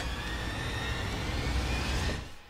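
A dramatic rumbling whoosh sound effect, a steady low rumble under a rushing noise with a faint tone slowly rising through it, fading out just after the end.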